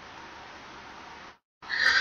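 Steady microphone hiss that cuts out to dead silence for a moment about one and a half seconds in, followed by a sharp breathy intake of breath just before speech resumes.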